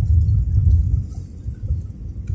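Low rumble heard inside the cabin of an easyJet Airbus A320-family airliner as it rolls along the runway after touchdown. The noise eases off about a second in as the aircraft slows.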